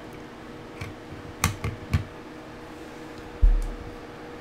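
Handling of a desktop servo robotic arm: a few light clicks and knocks, then a heavy low thump about three and a half seconds in as hands take hold of the arm. A faint steady hum runs underneath.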